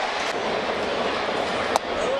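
Steady murmur of a ballpark crowd, with a single short click near the end.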